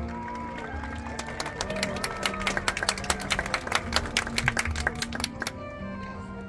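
A marching band playing sustained low brass tones under a gliding melody, with a fast run of sharp percussive clicks from about one second in until shortly before the end.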